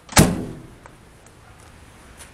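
Steel door of a 1969 Ford Econoline van giving one loud clunk at its latch just after the start, ringing out briefly, with a light click just before.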